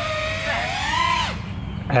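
FPV quadcopter's brushless motors and propellers whining, rising in pitch and then dropping off steeply about a second and a half in as the throttle comes down.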